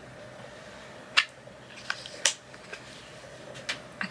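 About five sharp clicks and knocks from a plastic plant pot and a Monstera being handled while repotting, the loudest just over a second in and just after two seconds, over a faint steady hum.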